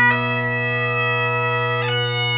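Great Highland bagpipe playing piobaireachd: the drones sound steadily beneath a long held chanter note, with a quick grace-note flourish just after the start and another near the end as the melody moves to a new note.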